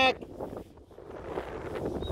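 Wind buffeting the microphone: a low, uneven rumble with no other distinct sound.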